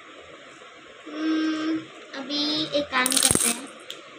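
Small bracelet charms or beads clinking together in the hands in a brief metallic jingle about three seconds in. Before it, a girl's voice makes a couple of drawn-out sounds without clear words.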